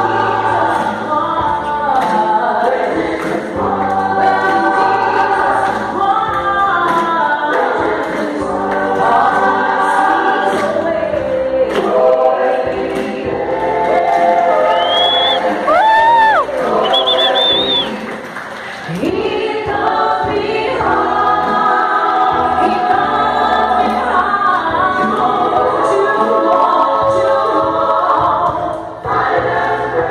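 A choir singing, several voices together in a steady, continuous song. About halfway through, a few short high whistles rise sharply over the singing.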